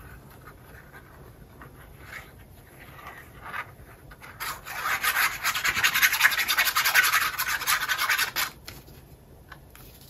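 Paper rubbing and sliding under the hands as a glued paper piece is pressed down and worked into a pocket. A few soft rustles come first, then a dense, scratchy rub of many quick strokes lasts about four seconds from just before the middle.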